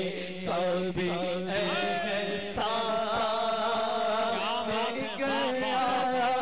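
A man's voice singing a naat, the Urdu devotional poem in praise of the Prophet, in long ornamented phrases with gliding pitch over a steady low held note.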